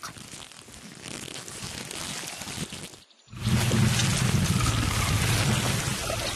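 Cartoon sound effects of a giant plant's roots moving through the ground: a rustling hiss, a brief break about three seconds in, then a louder, deeper rumble.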